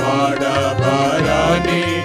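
A group of men's voices singing a Telugu Christian hymn together, accompanied by an electronic keyboard holding low bass notes under the melody.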